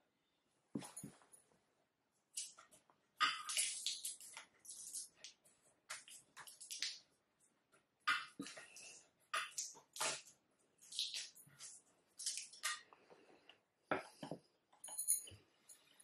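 Irregular rustling and scraping with a few soft knocks, handling noise from the camera being moved about, with a brief high squeak near the end.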